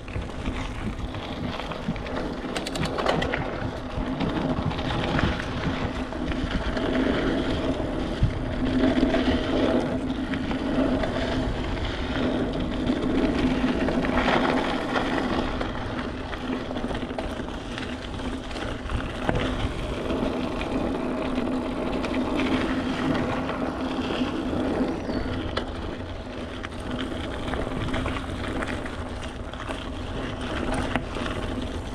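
Mountain bike riding along a dirt singletrack: tyres rolling over the trail and the bike rattling over bumps, with a steady low hum under it.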